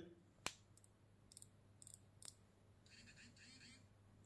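Near silence, broken by one short, sharp click about half a second in and a few fainter ticks after it: a fingertip tapping the smartwatch's touchscreen.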